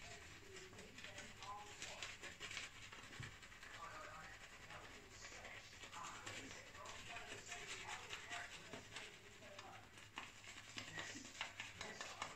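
Faint swishing and crackling of a synthetic shaving brush working lather over short stubble on the face.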